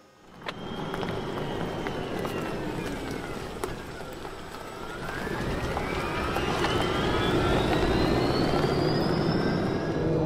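Electric Land Rover Defender 130 driving on Maxxis Trepador tyres: an electric motor whine that falls in pitch over the first few seconds, then rises steadily and gets louder as the vehicle gathers speed, over tyre and road noise.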